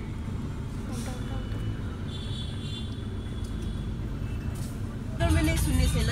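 Steady low rumble of a car's engine and road noise heard from inside the moving car's cabin. A voice starts near the end.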